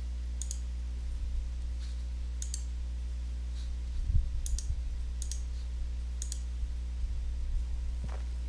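Computer mouse clicks, about six single or doubled clicks spaced a second or two apart, over a steady low electrical hum; a few dull low bumps come about four seconds in.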